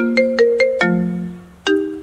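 Mobile phone ringtone: a melody of quick, ringing notes that pauses briefly about one and a half seconds in, then starts the phrase again.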